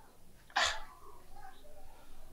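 A woman crying: one short, sharp sniffling sob about half a second in, then faint whimpering.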